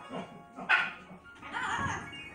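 Parrot giving a loud, dog-like bark once, about a third of the way in, then a short whining call near the end, over steady background music.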